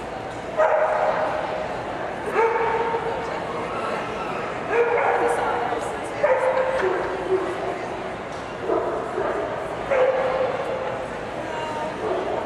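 A Nova Scotia duck tolling retriever giving a series of high-pitched yelping whines, about six short calls of under a second each, one to two seconds apart. Underneath is the steady murmur of a crowded show hall.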